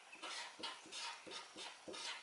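Felt-tip marker writing on paper: a quick series of short, faint scratching strokes as a function expression is written out.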